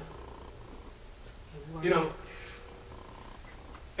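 Quiet room tone with a low steady hum, broken once about two seconds in by a short spoken "You know?"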